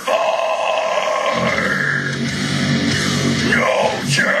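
Deathcore music with heavy guitars under a harsh screamed vocal, sung into a cupped microphone and held for about three and a half seconds.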